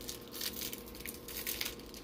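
Foil wrapper of a trading-card pack crinkling as it is handled, a run of soft irregular crackles.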